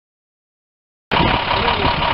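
Silence, then just past halfway through a fire truck's diesel engine is suddenly heard idling steadily, with a person's voice over it.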